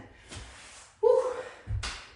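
A man's breathy exhale, then a short falling "woo" of relief just after finishing a set of push-ups. Near the end comes a single dull thud as he shifts his weight onto his knees on the floor mat.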